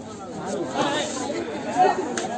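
Several voices talking and calling out over one another, with one louder shout near the end.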